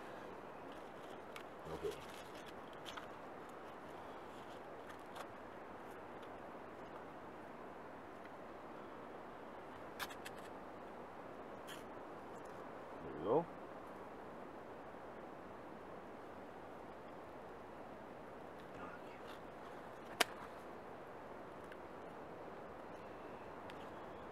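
Faint, steady outdoor hush, broken by a couple of sharp scrapes about ten seconds in and a single sharp click near the end: a knife spine striking sparks from a fire steel onto birch bark, which catches.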